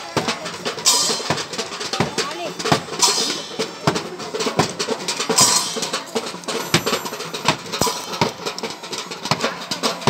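A children's marching drum band playing bass drum and snare drums in an uneven beat, with three bright, splashy crashes. Voices of the watching crowd mingle with the drumming.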